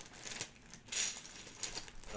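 Plastic LEGO bricks clattering and rattling as a hand rummages through a plastic bag full of them, with the bag crinkling; a few separate rattles, the loudest about a second in.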